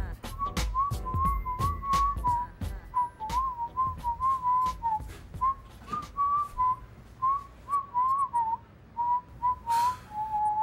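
A person whistling a slow, wandering tune that stays close to one pitch, with short rises and dips. Sharp clicks and low thumps sound under it in the first few seconds and again just before the end.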